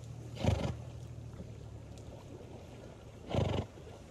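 A swimming horse blowing hard through its nostrils: two short, forceful breaths about three seconds apart.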